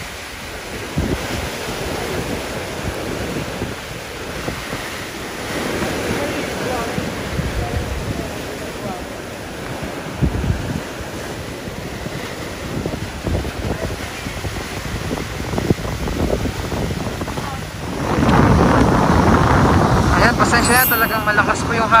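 Small sea waves splashing and washing over a large plastic pipe lying in the shallows, with wind buffeting the microphone. The surf and wind grow louder from about eighteen seconds in.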